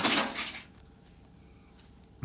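Glossy trading cards sliding against each other as a stack is fanned out by hand: one brief rustling swish about half a second long.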